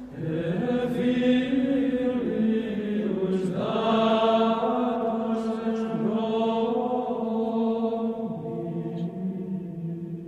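Choral chant: several voices singing long held notes together, shifting to new notes a few times, with a rise about a third of the way in.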